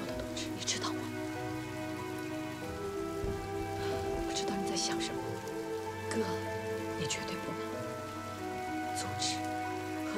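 Soft background score of long held chords, with quiet spoken dialogue and its hissing consonants over it.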